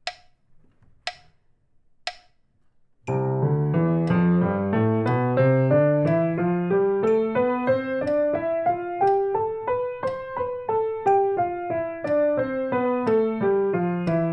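A metronome at 60 beats a minute clicks three times, once a second, as a count-in. About three seconds in, a piano joins, playing a C major scale with both hands in eighth-note triplets, three notes to each click, rising over three octaves and starting back down, while the clicks go on.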